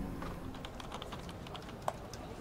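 Typing on a computer keyboard: a run of light key clicks, several a second, with one sharper click near the end.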